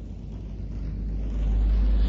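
A low rumble that grows steadily louder, strongest near the end.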